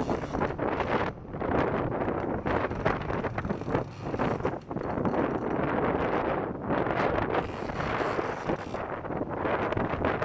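Wind buffeting the microphone in uneven gusts over a steady rushing noise, on a fishing boat at sea.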